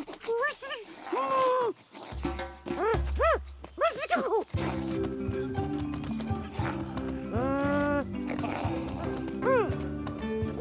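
Voiced cartoon animal calls: short whines and yelps that rise and fall in pitch, in several bursts, over background music.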